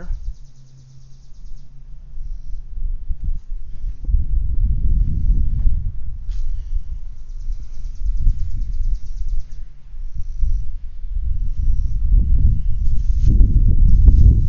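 Wind buffeting the microphone: an irregular low rumble that swells and grows louder toward the end. A faint, fast-pulsing insect chirr sits high above it at the start and again midway.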